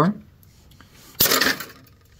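Hinged aluminium wing of a VEX robot swung open by hand and locking into place: one sudden metallic clack with a short rattle a little past a second in, dying away within half a second.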